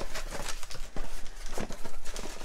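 Cardboard shipping box being handled as it is opened: the flaps and the packing inside rustle, with a run of light taps and knocks.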